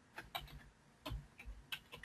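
Faint clicking of computer keyboard keys being typed: several uneven keystrokes, with a short pause about halfway through.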